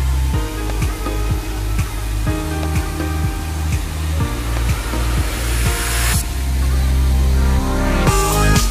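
Electronic background music with a deep bass and a steady beat; about five seconds in, a hissing swell builds and cuts off suddenly about six seconds in.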